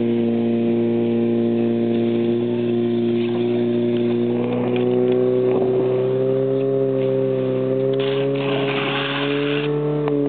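Portable fire pump engine running hard at high revs, a steady loud tone that drifts slightly higher in pitch while it pumps water into the hoses. A rushing hiss joins about eight seconds in as the water jets spray.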